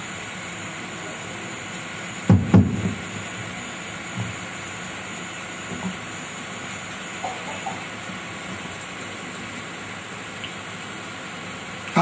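A pause in a speech recording: steady hiss throughout, with two dull knocks close together about two seconds in and a few faint soft bumps later.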